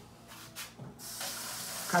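Kitchen tap running into a sink: a steady rush of water that starts about halfway through.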